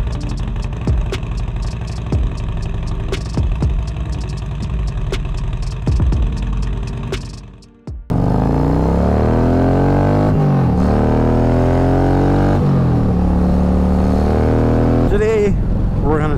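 Intro music with a steady beat fades out about halfway. It gives way to a Harley-Davidson Milwaukee-Eight V-twin running under way, its pitch climbing as the bike accelerates, shifting up once, climbing again, then holding steady at cruising speed.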